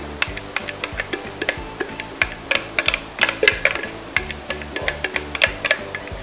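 Background music with a steady low beat, over irregular sharp clicks and taps of a spatula scraping blended mango out of a plastic Tupperware Extra Chef chopper bowl into a glass bowl.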